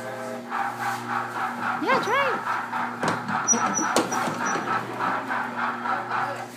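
Kiddie train ride playing an electronic tune from its speaker, with two quick rising-and-falling tones about two seconds in and a few knocks around three to four seconds.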